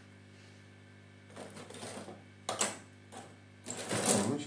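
Scattered clicks and brief rustles of small items being handled on a phone-repair bench, the sharpest click about two and a half seconds in, over a steady low electrical hum.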